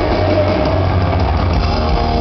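Live rock band playing loudly in an arena, dense and steady with a heavy bass, with a held note over the band in the first half second or so.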